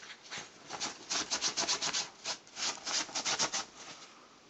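Scratching on bedsheets: a quick run of rasping strokes on the fabric, about five or six a second, starting about a second in and stopping near the end.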